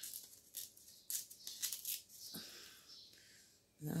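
Crinkling and rustling of a small paper sheet of round stickers being handled, peeled and pressed onto a journal page, in several short crackly rustles over the first three seconds.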